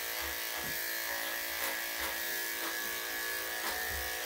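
Corded electric dog-grooming clippers running with a steady hum as they shave a dog's thick, damp coat.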